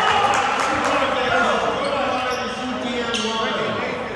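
Echoing gym sound during a basketball game: a basketball bouncing on the court over indistinct chatter from players and spectators.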